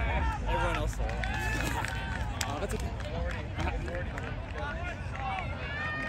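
Several voices shouting and calling across a touch football field, overlapping one another, over a steady low rumble.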